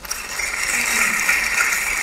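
Audience applause: many hands clapping, starting suddenly and holding steady.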